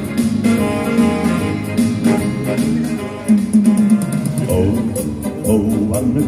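Guitar-led dance music from a band, instrumental at this point.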